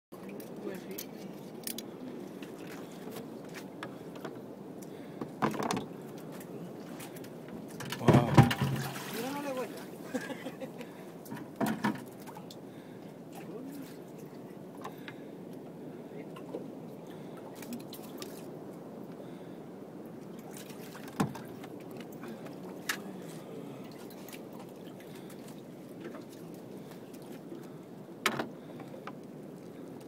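Water sloshing and lapping against the side of a small open fishing boat as a big sea bass is hauled up alongside the hull by hand. A few sharp knocks and splashes break in, the loudest about eight seconds in.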